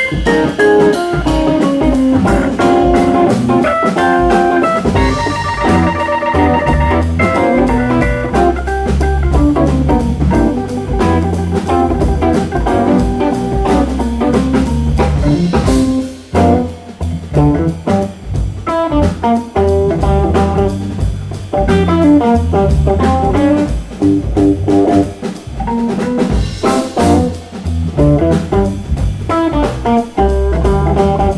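Live jazz-funk trio of organ, electric guitar and drum kit playing. The guitar carries the line over organ and drums, with a brief drop in level about sixteen seconds in.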